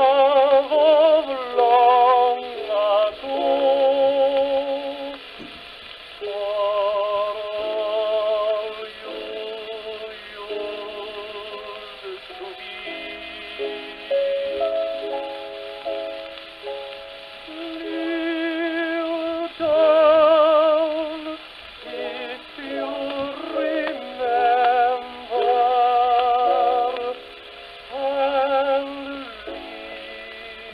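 A tenor voice singing a ballad with wide vibrato, accompanied by piano, played from a 78 rpm HMV gramophone record; the sound has no high treble.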